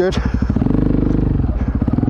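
Motorcycle engine running as the bike is ridden along the street, its note shifting around the middle.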